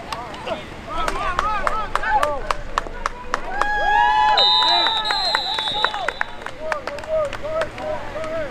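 Players and sideline spectators shouting during a football play, with scattered sharp clicks. About four and a half seconds in, a referee's whistle blows, held for about a second and a half, signalling the play dead.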